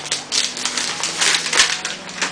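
Paper crinkling and rustling in a dense run of small crackles as a sheet of puff pastry is handled and unrolled from its wrapping.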